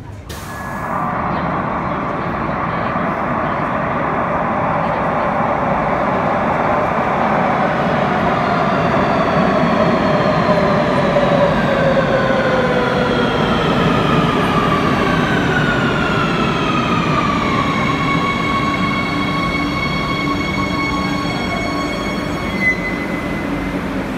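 Madrid Metro electric train arriving at an underground platform, braking to a stop. Its motor whine, several stacked tones, falls in pitch from about eight seconds in and levels off into steady tones once the train halts, about eighteen seconds in. A short high tone sounds near the end.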